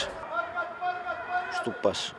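A male football commentator's voice: one long drawn-out sound held on a steady pitch, then speech again near the end.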